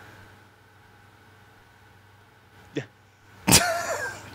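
A lull in a spoken conversation: faint steady background hiss, a brief click near the end, then a short, sharp burst of noise just before talk resumes.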